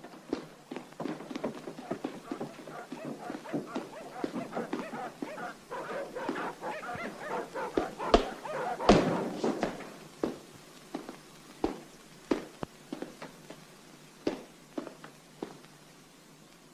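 Footsteps and knocks on wooden stairs and floorboards. For about the first ten seconds a fainter pitched sound comes and goes under them; after that only single, spaced steps remain.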